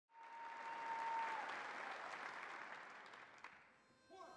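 Audience applause that swells briefly and then dies away over about three seconds. A single steady high tone sounds over it for the first second and a half.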